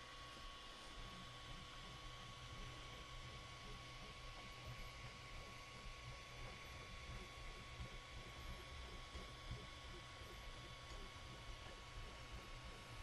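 Near silence: quiet room tone with a faint steady electrical hum, and no distinct sound from the printer gantry being moved.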